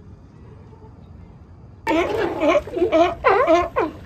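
A low, faint background hiss, then about two seconds in California sea lions start barking: a quick run of harsh calls that rise and fall in pitch.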